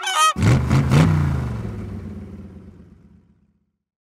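A yellow rubber-duck squeeze horn honks briefly at the start. Then an engine revs up and down and fades away to silence over about three seconds.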